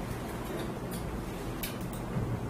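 Steady low background hum with two faint clicks, one about a second in and one near the end.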